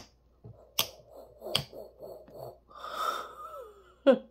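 A metal spoon clicks twice against a glass jar while stirring shaving cream, about a second and a second and a half in. Near the end comes a breathy, drawn-out voice sound with a falling pitch.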